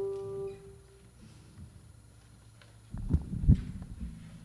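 A final guitar chord ringing out and fading away within the first second. About three seconds in come a few heavy low thumps from a microphone being handled and lifted out of its stand.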